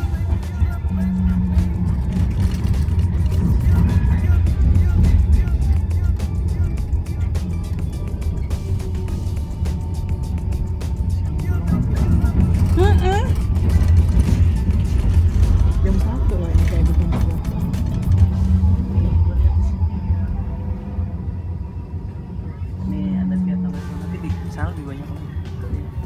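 Steady low rumble and rattle of a city tram running along the street, heard from inside the car.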